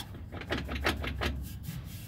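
Handling noise: a quick run of small clicks and rubbing knocks over a low rumble, starting about half a second in.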